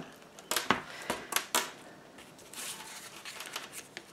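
Cardstock album pages and flaps being handled: a handful of quick sharp clicks and taps in the first second and a half, then soft paper rustling.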